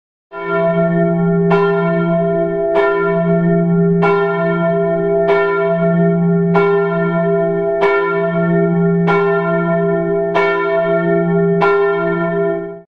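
A church bell tolling, struck about every one and a quarter seconds, about ten strokes in all, with each stroke ringing on into the next.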